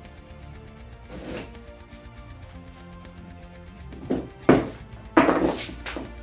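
Background guitar music, with a few sharp knocks near the end and a short louder scrape as the small aircraft engine on its steel angle-bar mount is lifted off the wooden workbench.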